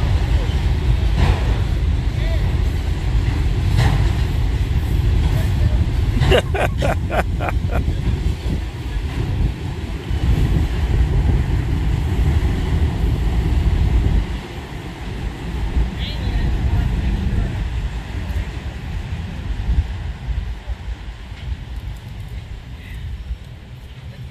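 Freight train of autorack cars rolling past: a steady low rumble of wheels on rail, with a quick run of rhythmic clacks, about six or seven a second, a quarter of the way in. The rumble drops off a little past halfway.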